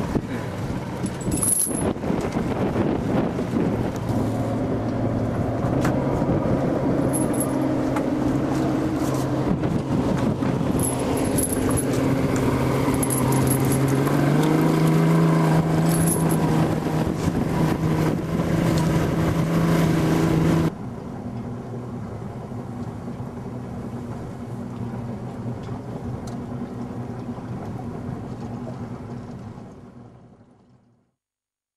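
Motorboat engine running under way with wind on the microphone, its pitch rising about halfway through as the boat speeds up, with a few faint high metallic clinks. About two-thirds of the way in the sound drops abruptly to a quieter, lower engine hum, which fades out at the end.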